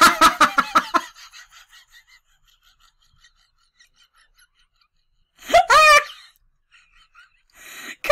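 A woman laughing hard: a burst of rapid laugh pulses that fades out over the first two seconds. After a silent stretch comes a short, high-pitched squeal of laughter about five and a half seconds in.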